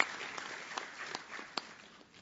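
Audience applauding in a large hall, the clapping thinning out and dying away.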